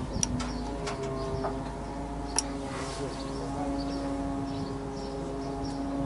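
Steady mechanical hum under a few sharp metallic clicks of tool work on a truck's underside, the loudest click about two and a half seconds in.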